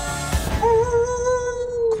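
A person's voice imitating a wolf howl: one long, held howl that starts about half a second in, over trailer music whose beat thumps in the first half.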